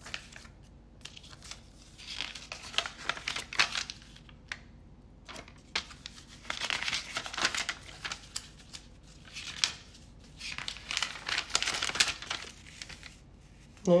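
A folded paper instruction sheet rustling and crinkling as it is unfolded and handled by hand, in three bursts separated by brief quiet pauses.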